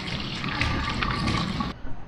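Tap water running and splashing over a bunch of celery that is rubbed clean by hand in a stainless steel sink; the sound stops abruptly near the end.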